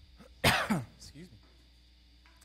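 A man clearing his throat: one sharp, loud rasp about half a second in, falling in pitch, followed by two quieter short rasps.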